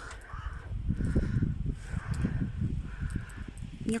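Wind buffeting a handheld camera's microphone in uneven gusts, with a low rumble.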